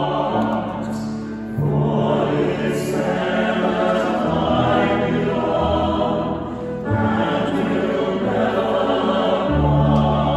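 Mixed choir of men and women singing together, accompanied by double bass and piano, the low bass notes sustained under the voices. The singing moves in long phrases with short breaks about one and a half seconds in and again near seven seconds.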